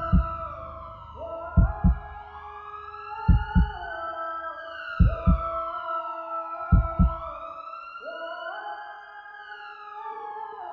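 Film score over the credits: paired low heartbeat-like thumps, about every second and a half, under a slowly rising and falling siren-like wail. The thumps stop about seven seconds in while the wail carries on.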